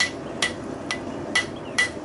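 Hand hammer striking a red-hot steel tap on an anvil to flatten it: five blows, about two a second, each with a short metallic ring.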